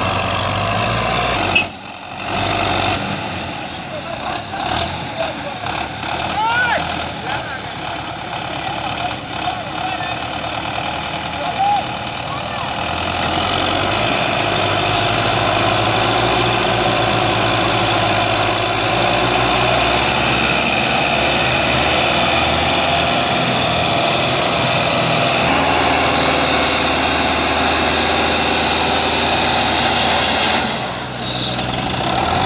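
Massey Ferguson 260 tractor's three-cylinder diesel engine running hard under heavy load while hauling an overloaded sugarcane trolley. The sound is continuous, with a brief drop-out about two seconds in, and it settles into a louder, steady pull from about halfway through.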